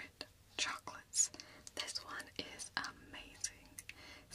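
Soft whispering, with a few short clicks between the words.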